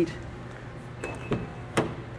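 Mazda CX-50 side door being opened: clicks from the handle and then the latch releasing, the last and strongest near the end, over a low steady hum.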